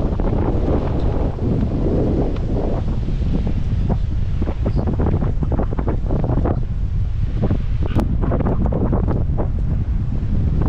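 Strong wind buffeting the microphone in uneven gusts, over the wash of surf breaking on the shore.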